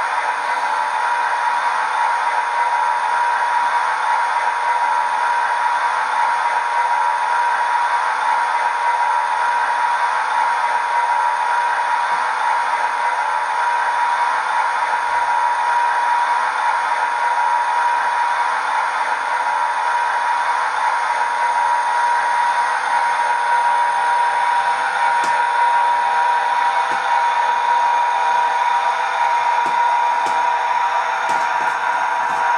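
A steady mechanical whir with a constant high whine, even in level, with no speech over it.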